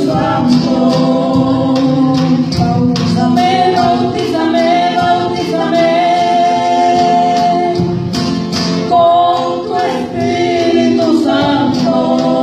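Live church praise music: several voices singing a held, sustained melody over a band, with a drum kit keeping a steady beat.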